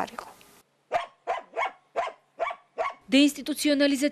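A dog barking: a quick run of short barks, about three a second, starting about a second in. A voice starts speaking near the end.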